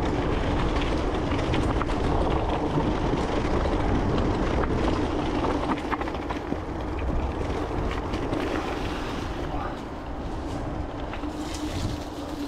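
Mountain bike rolling over a gravel forest trail: tyres crunching on loose stones, the bike rattling with many small clicks, and wind buffeting the camera microphone with a steady rumble and hum. It gets a little quieter near the end.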